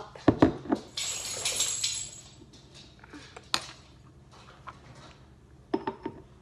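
Glass hot sauce bottle and spoon handled on a table: two sharp knocks near the start, about a second of hissing noise, a single click halfway through, and two more knocks near the end as the bottle is recapped.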